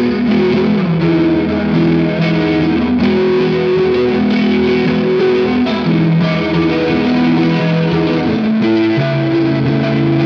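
Electric guitar played through an Electro-Harmonix Germanium Big Muff fuzz into a Laney Lionheart all-tube amp: thick, distorted held chords that change every second or so, moving to a lower chord near the end.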